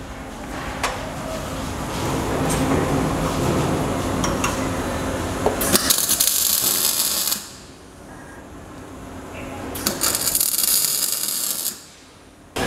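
Wire-feed (MIG) welder tack-welding a steel-tube motorcycle chassis: two short bursts of arc crackle, about six seconds in and again near ten seconds, each under two seconds long.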